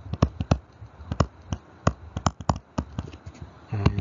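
Stylus tip clicking and tapping on a tablet screen while a word is handwritten: about a dozen short, irregular clicks.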